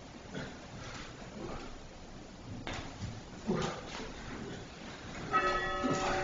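Soft knocks and shuffles on a wooden floor in a quiet church, then a little over five seconds in a bell is struck once and rings on with several steady tones.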